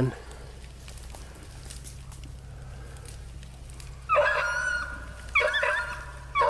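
Rabbit hounds baying: two bouts of drawn-out cries, the first about four seconds in and the second near the end, over a low steady background.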